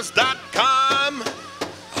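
Powwow drum group singing an intertribal song: high-pitched voices in descending phrases over a steady beat on a large shared drum.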